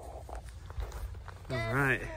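Footsteps crunching through fresh snow, with faint irregular crunches. Near the end a person's voice lets out a short wavering vocal sound, the loudest thing heard.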